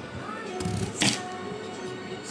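Background music with steady held tones, and about a second in a single sharp knock as a kitchen knife cuts through a raw potato and strikes the wooden cutting board.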